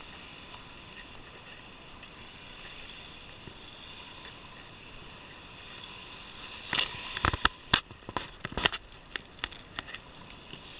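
Steady hiss of small waves washing in shallow water at the shoreline. About seven seconds in, a quick run of sharp knocks and clicks, the loudest sounds here.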